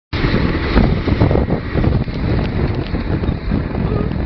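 Wind buffeting the microphone on a speeding motorboat, in uneven gusts, over the run of its 40 hp outboard motor and the rush of the wake.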